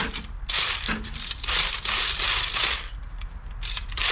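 Pump-action brush spinner whirring with a rattling, ratchet-like sound as its plunger is pushed down in repeated strokes. It spins an oil brush inside a plastic bucket to throw the paint thinner out of the bristles.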